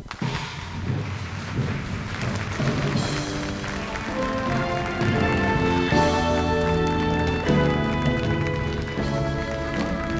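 A live studio band strikes up an instrumental intro. It starts quietly and builds over about three seconds into full, sustained chords.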